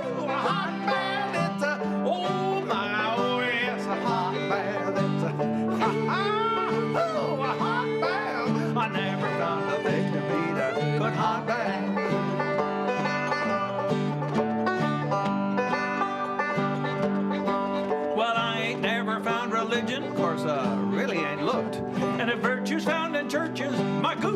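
Instrumental break of a country-style acoustic tune: fiddle carries a sliding melody over banjo and strummed strings, with no singing.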